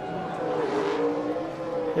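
A NASCAR Cup stock car's V8 engine revving during celebratory donuts, holding a high, slightly wavering note.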